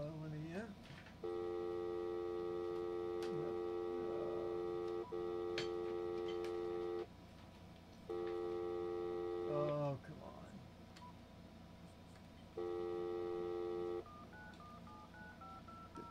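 Telephone tones through a phone's speaker. A steady dial tone sounds for several seconds with a short break, comes back twice more briefly, then a run of short beeps stepping up and down in pitch near the end, as a number is dialed.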